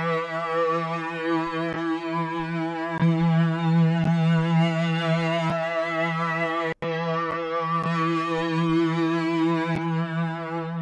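Harmor synthesizer pad from the AeroPad Patcher preset holding one sustained note, rich in overtones and wavering slightly in pitch. Its loudness and colour shift as the compression mode is switched between limiting, off and warming: it gets louder about three seconds in and cuts out for an instant a little before seven seconds.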